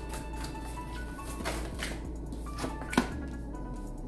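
Soft background music with steady sustained tones, over oracle cards being shuffled by hand, with a few sharp card clicks; the loudest snap comes about three seconds in.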